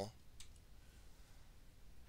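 Near silence with room tone, broken by a faint click about half a second in.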